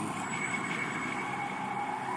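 Steady rushing wind, a winter gust blowing in through an opened door, with a faint high whistle held throughout.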